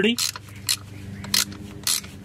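A Torx T30 bit turning out a small bolt from a steel cover, giving four short scrapes about half a second apart over a steady low hum.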